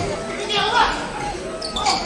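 A volleyball being struck during an indoor rally, with players' short shouted calls echoing in the sports hall.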